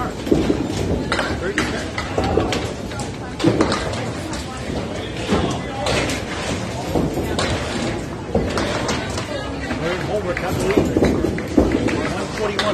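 Busy candlepin bowling alley: irregular knocks and clatter of balls and pins, over a steady background of people talking.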